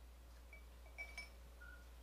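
Near silence with a few faint glass clinks about a second in: the neck of a glass beer bottle touching the rim of a pint glass while beer is poured.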